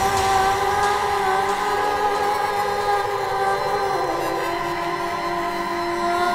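Drum and bass mix in a breakdown: held synthesizer chords and drones with no drum beat, the chord changing about four seconds in.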